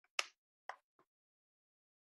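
Three short, sharp clicks within about a second: the first loudest, the second softer, the third faint.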